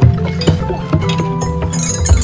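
Outdoor tuned pipe drums slapped by hand, with ringing metal chime tubes struck alongside: a busy jumble of low thumps and ringing notes.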